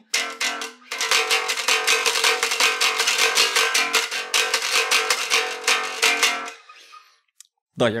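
Unplugged KliraCort jazz bass heard acoustically, its strings struck hard in a fast run of strokes. Under the strong attack the pickups clack. It dies away about a second before the end.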